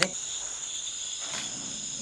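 Crickets chirring in a steady, high-pitched drone, with a single sharp click right at the start.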